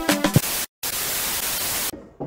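The tail of an Afrobeat intro track with its beat cutting off in the first half-second, then after a brief dead gap about a second of steady static hiss, a TV-static sound effect.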